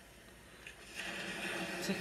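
A tarot deck being shuffled by hand, the cards sliding against one another in a soft rustle that starts about a second in.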